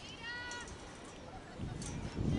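A faint, high-pitched shouted call from a distant voice, held for about half a second near the start.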